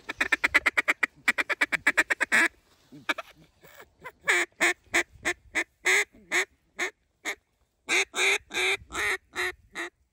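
A hunter blowing a mallard-style duck call to ducks overhead. It opens with a fast run of short notes lasting about two and a half seconds, then after a short pause gives a slower string of loud quacks at about three a second.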